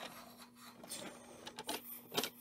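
Small toy train engine being pushed by hand across a hard plastic playset base: its wheels roll and scrape with a run of irregular small clicks and rubs.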